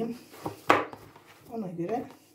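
One sharp knock about a second in, as hands handle a plastic mixing bowl on a stone countertop. A short bit of voice follows near the end.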